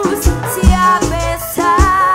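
Live band music with a woman singing over bass and drums on a steady beat; she holds a long note near the end.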